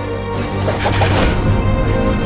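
Film score with sustained chords over a low drone. A few quick, sharp sound-effect hits come about halfway through, timed with cyborg hands snapping into fighting stances.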